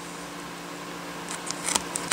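Steady low room hum with a few faint soft ticks and rustles near the end, from card stock being handled and pressed onto the page.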